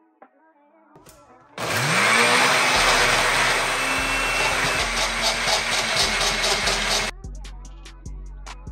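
Countertop blender switched on about a second and a half in, its motor spinning up with a quickly rising whine and then running steadily as it purées chopped peppers, onion and greens into a seasoning blend. It runs for about five and a half seconds and cuts off suddenly. Faint background music plays before and after.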